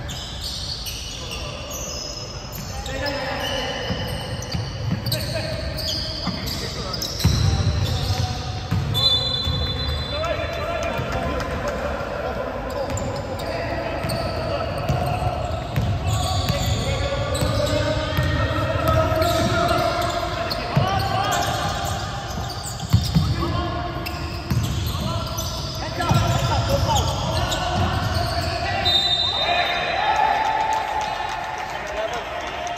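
Basketball being dribbled and bouncing on a hardwood court, a run of low thumps throughout, with players' voices carrying in a large hall. Two brief shrill tones sound, one about nine seconds in and one near the end.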